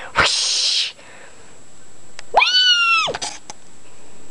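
A short breathy whoosh at the start, then a cat meowing once about two and a half seconds in: one high call that rises, holds and drops away, under a second long.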